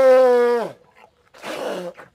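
Elephant honking: one long held call that drops in pitch and stops about three-quarters of a second in, then a shorter, quieter call near the end.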